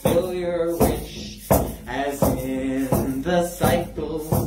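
A hand-held frame drum beaten in a slow, steady pulse, a little more than one beat a second, under a man's chanted singing with long held notes.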